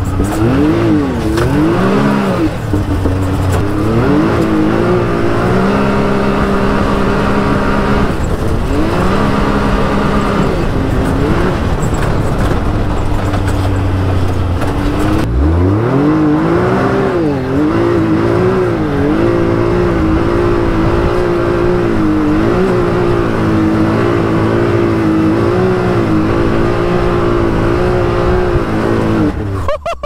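Can-Am Maverick X3 Turbo RR's turbocharged three-cylinder Rotax engine revving up and down as the machine is driven hard. About halfway through it revs up from low, then holds a high, wavering rev.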